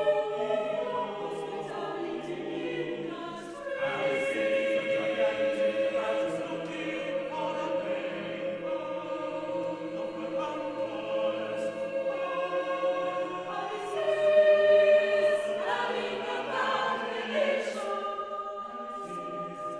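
Mixed chamber choir singing a cappella in long, sustained chords, swelling louder about two-thirds of the way through.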